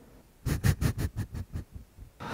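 A person snickering mischievously, a quick run of about eight short breathy bursts that fade away.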